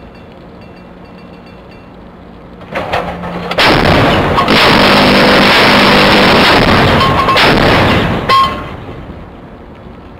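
Naval deck gun firing: a sudden very loud blast about three and a half seconds in, staying loud and distorted for about five seconds, then dying away. Before it a low steady hum.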